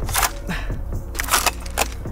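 Handling noise from a heavy .50-caliber bolt-action sniper rifle and tactical gear as it is hoisted and shifted: a few short knocks, clicks and rustles spread through the moment, over a low steady hum.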